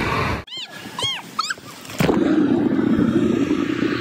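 A few short, high squeaky calls that rise and fall, then a loud, muffled rush of water and bubbles from a phone recording underwater in a pool, starting about halfway through.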